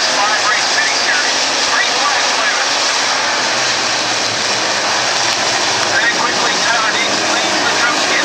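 A field of dirt-track Pro Stock race cars running together, their engines making a loud, continuous noise with pitch rising and falling as cars go by.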